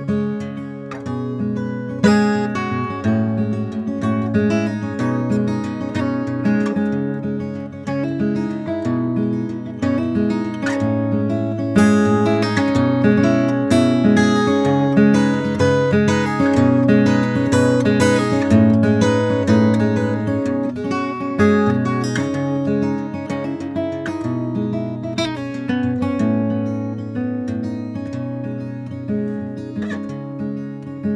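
Acoustic guitar played fingerstyle: an instrumental passage of picked bass notes under a plucked melody, growing a little quieter over the last few seconds.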